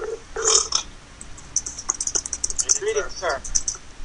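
Short, wordless voice sounds from people on an internet voice call, with a run of quick clicks in the middle.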